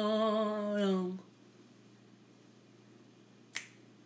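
A woman singing unaccompanied, holding a long note with vibrato that ends about a second in, then one sharp click near the end.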